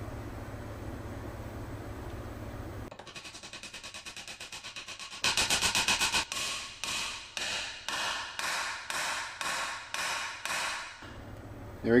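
Hammer driving a shift-pin sleeve into a ZF manual transmission case. Quick light taps come first, then harder metal-on-metal blows about two a second, each ringing briefly, until the sleeve's collar bottoms out.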